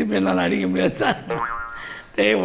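A man's voice in animated, sing-song speech. About a second and a half in, it turns into a drawn-out, buzzy vocal sound.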